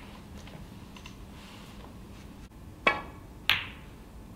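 Snooker balls clicking during a shot: two sharp clicks about half a second apart, the cue striking the cue ball and then the cue ball striking a red, over quiet arena room tone.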